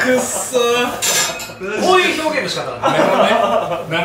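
Plates and utensils clinking on a restaurant table as meat is served, amid men's talk and chuckling, with a cluster of sharp clinks about a second in.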